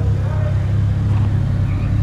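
Dallara Stradale's turbocharged four-cylinder engine running at low revs as the car pulls away slowly, a steady low drone.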